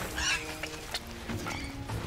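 Cries of a speared antelope, a short high outburst just after the start and fainter calls after it, over background music with long held notes.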